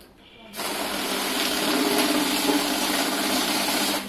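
PARAS 1515 mixed-value currency counting machine starting about half a second in and feeding a stack of banknotes through at high speed: a dense rush of paper over a steady motor hum, which stops abruptly near the end once the batch has run through.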